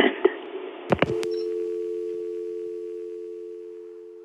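A few sharp clicks of a telephone line about a second in, then a steady two-tone telephone dial tone that slowly fades.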